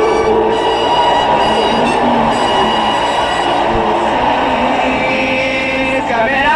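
A 1960s psychedelic rock band and orchestra play a dense instrumental passage of held chords, with no vocal line.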